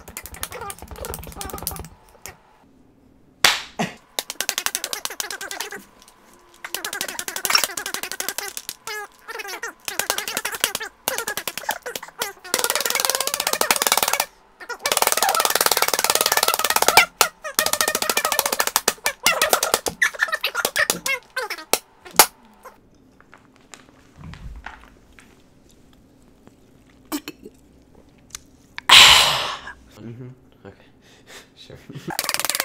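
Rapid runs of hand slaps from palm-on-palm high fives, coming in bursts of several seconds with short pauses between, and a loud burst near the end.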